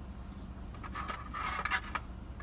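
Scraping and rustling handling noise with a few sharp clicks in the second second, over a steady low rumble inside a car cabin.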